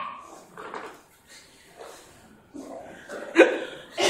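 A few short dog-like yips and whimpers voiced by a person imitating a dog, quieter than the sounds around them, with the loudest a brief call near the end.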